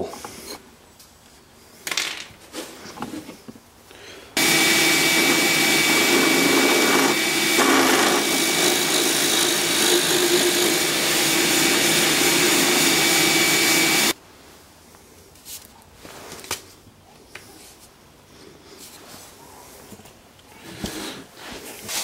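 Drill press boring a hole for a dowel in a hardwood block. The motor comes on abruptly, runs steadily with a high whine for about ten seconds and cuts off suddenly. Light handling knocks come before and after.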